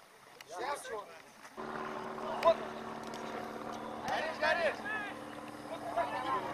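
Soccer players shouting short calls across an outdoor pitch. About one and a half seconds in, a steady low hum starts suddenly underneath, and a single sharp thump comes about a second later.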